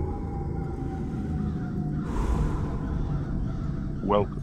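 Intro sound design: a low rumbling drone with a faint tone slowly sliding down in pitch, and a whooshing swell about halfway through.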